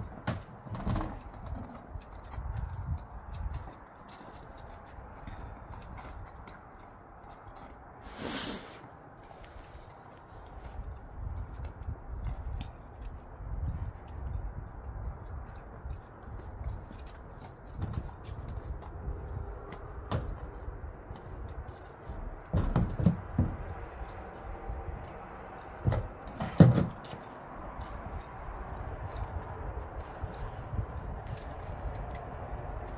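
A horse's hooves thudding on a horsebox loading ramp and stepping on packed snow, with a few heavier, louder hoof thuds toward the end.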